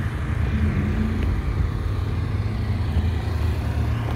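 Car engine idling in a parking lot: a low, steady rumble.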